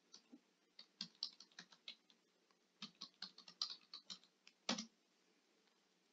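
Computer keyboard typing, faint: two quick runs of keystrokes about a second apart as a first name and then a surname are entered into a search form. The last key press, near the end of the second run, is the loudest.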